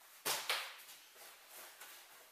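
Handling noise of kit being put down and rummaged for in a fabric rucksack: two sharp rustling scrapes about a quarter second apart near the start, then softer rustling.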